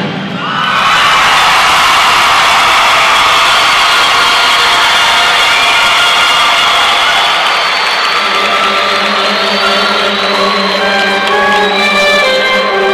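A large crowd cheering and shouting in a loud arena right after the band's brass passage cuts off. About eight seconds in, held musical notes come in under the cheering.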